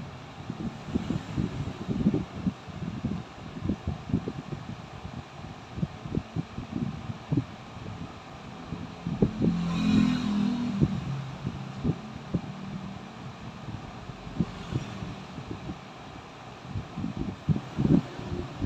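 Irregular rustling and soft bumps close to the microphone, with a brief low pitched sound about ten seconds in.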